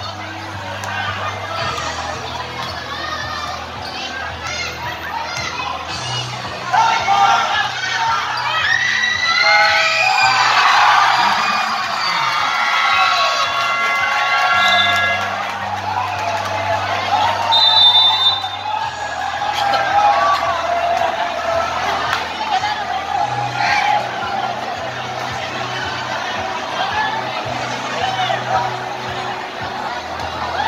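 Crowd of basketball spectators cheering and shouting over music with a low, shifting bass line. The crowd noise swells about seven seconds in, is loudest for several seconds after, and flares again briefly later on.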